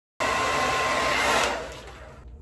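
Handheld hair dryer running on high, blowing through a section of hair held over a round brush, with a steady whine in its rush of air. It cuts in abruptly just after the start and dies down near the end.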